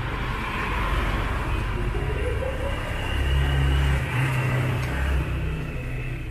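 A motor vehicle's engine rumbling in passing traffic, swelling louder about three seconds in and easing after five.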